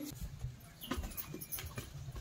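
Footsteps on a hard floor: a row of soft, low thuds about three a second, with a few faint clicks about a second in.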